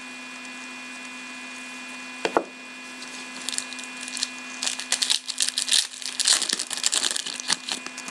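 Foil trading card pack being torn open and handled, a quick run of crisp crinkles and crackles starting about three seconds in.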